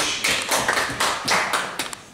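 Councillors applauding a question in the chamber: a burst of many irregular, sharp claps and knocks that thins out near the end.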